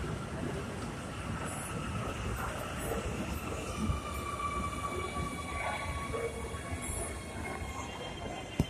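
Electric metro train moving alongside the station platform: a steady rumble of wheels on rail, joined about three seconds in by several high, thin tones that hold to the end.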